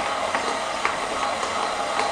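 Stand mixer motor running steadily as its flat beater churns dry, crumbly cookie dough in a glass bowl, with a couple of light ticks.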